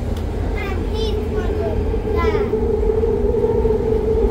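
London Underground train running through a tunnel, heard from inside the carriage: a steady low rumble under a steady hum that grows louder about halfway through.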